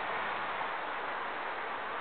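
Steady, even outdoor background hiss with no horn sounding.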